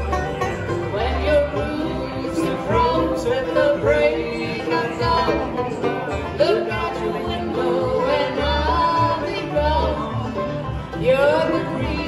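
Bluegrass band playing: banjo, mandolin and acoustic guitar picking over an upright bass.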